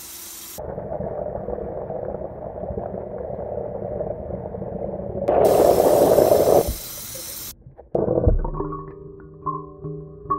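Tap water running from a kitchen faucet into a stainless steel pot: a steady rushing that gets louder and brighter about five seconds in, then stops a couple of seconds later. Background music with mallet-like notes comes in near the end.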